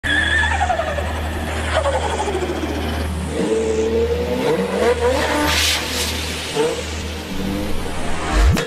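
Car engine revving, its pitch sliding down and up again and again, with tyres squealing and skidding, over a steady low hum. A loud rushing burst comes about five and a half seconds in.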